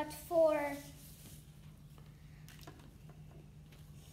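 A girl's short voiced sound falling in pitch, then faint clicks and rustling as tissue is handled and fitted onto a plastic Pie Face game toy.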